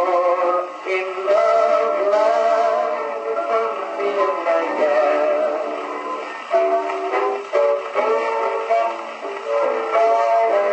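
Victrola VV 8-4 phonograph playing a record: a thin, old-time music sound with no deep bass.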